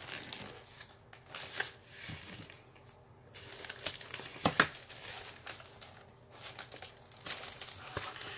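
Plastic poly mailer bag crinkling and rustling in irregular bursts as it is handled and cut open, with a sharper crackle about four and a half seconds in.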